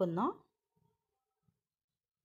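A voice finishing a spoken phrase just after the start, then near silence with a couple of faint soft knocks.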